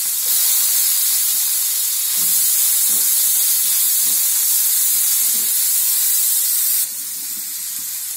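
Gourd strips sizzling loudly in hot oil in a frying pan as more are tipped in and stirred, with faint knocks of the stirring. The sizzle drops abruptly quieter about seven seconds in.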